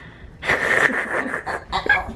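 A woman's long, breathy, wheezing laugh, with a few short voiced bursts of laughter near the end.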